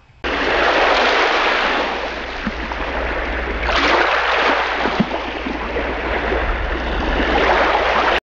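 Ocean surf washing ashore: a steady rush of waves that starts suddenly just after the start, with a wave swelling louder about four seconds in.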